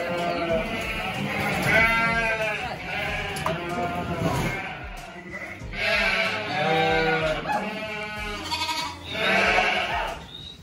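A flock of sheep bleating, a string of loud calls coming every second or two, several voices overlapping.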